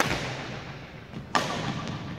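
Two badminton racket strikes on a shuttlecock, about a second and a half apart, the first an overhead stroke; each sharp crack rings out in the echo of a large gym hall.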